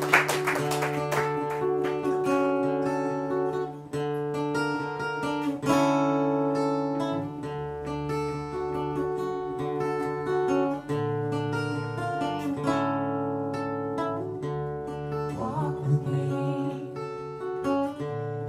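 Acoustic guitar playing an instrumental song intro in single plucked notes, with a bass guitar holding low notes underneath.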